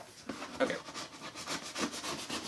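A cardboard shipping box being opened: quick repeated scraping and rubbing as the packing tape is cut and the flaps are worked apart.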